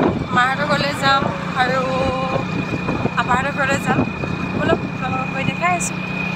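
A motor vehicle's engine running steadily, a constant low hum with a thin high whine, under a woman's voice talking in stretches.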